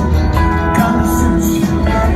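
Live band playing an instrumental passage at full volume: drums with cymbals, upright bass, piano, acoustic guitar and string players, with held string notes over a steady beat. Recorded on a phone from the audience, so it sounds distant and bass-heavy.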